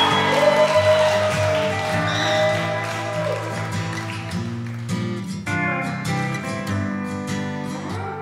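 Instrumental country intro: a pedal steel guitar holds sliding, gliding notes over an acoustic guitar, with a quicker strummed rhythm taking over about five seconds in.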